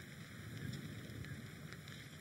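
Faint, even background noise with no distinct events.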